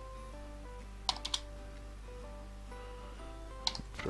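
A computer keyboard being typed on: three quick keystrokes about a second in and one more near the end. Soft background music with sustained notes plays underneath.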